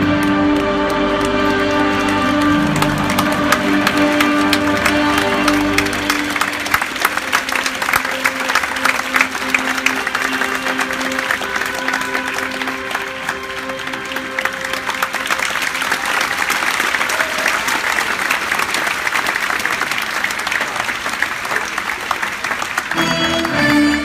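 Audience applauding while music plays on. The clapping rises about six seconds in, as the music's bass drops away, and carries on under the softer music.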